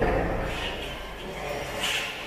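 Handling noise from the camera as it is carried: a low rumble that starts suddenly, with rubbing and rustling against clothing, and a brief brighter rustle near the end.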